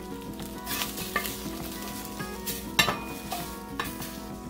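Wooden spoon scraping scrambled eggs out of a hot stainless steel skillet into a bowl, with several sharp knocks and scrapes against the pan, the loudest near the end, over a steady sizzle from the pan.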